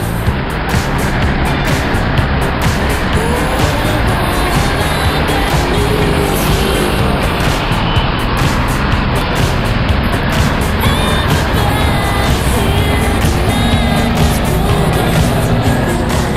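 Steady road traffic noise from a busy street, cars driving by, with background music playing underneath.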